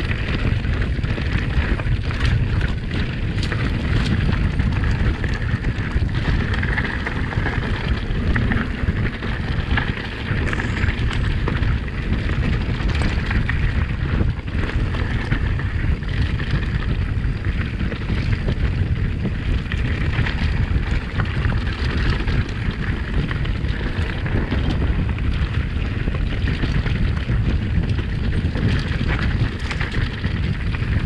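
Wind buffeting the microphone on a moving mountain bike, over a continuous rumble of tyres rolling on loose rock and gravel, with frequent small knocks and rattles from the bike jolting over stones.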